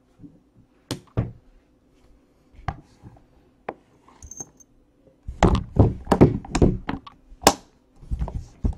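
A black hard-shell carrying case being handled and shut: a few scattered taps and clicks, then a quick run of hard thunks and clicks from about five seconds in as the lid is closed.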